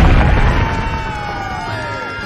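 An explosion sound effect's low rumble dies away over the first second, under orchestral film score with a falling line.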